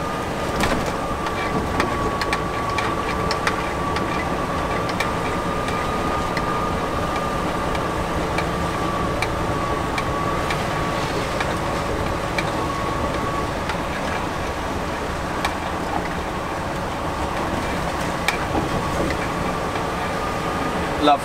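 Inside the cab of a Volvo FH lorry creeping along a wet, muddy farm track: steady engine and tyre rumble with a thin steady whine and scattered light clicks and knocks.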